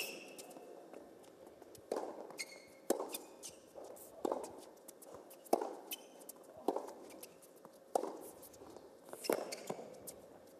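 A tennis rally on an indoor hard court: racket strings striking the ball back and forth, seven hits about a second apart, with short shoe squeaks on the court between some of the shots.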